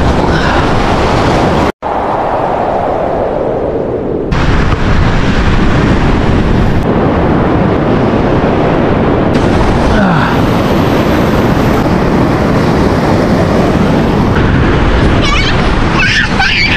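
Strong wind buffeting the microphone over the rush of breaking surf, loud and rumbling, changing abruptly several times with a brief dropout about two seconds in.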